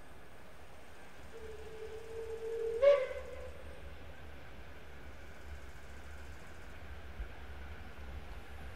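Steam locomotive whistle heard from a distance: one blast of about a second and a half that holds a steady note, then jumps up in pitch and is loudest just before it stops, about three seconds in.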